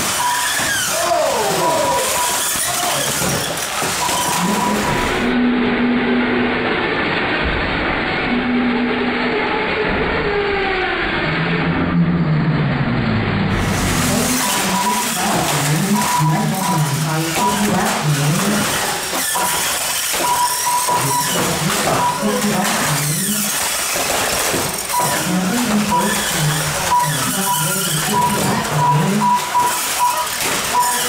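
Radio-controlled 1/12-scale banger cars racing on an indoor oval, with their motors running and knocks as they hit each other and the barriers. Voices and music carry on underneath, along with a short high beep that repeats on and off.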